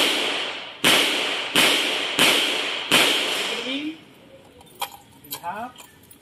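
Five semi-automatic pistol shots fired in quick succession, about 0.7 s apart, each followed by a short echo off the concrete range walls. A few faint clicks follow after the last shot.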